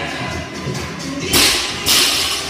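A loaded barbell is dropped from overhead onto the gym floor about one and a half seconds in, making a loud crash. A second sharp noise follows near the end, all over background music.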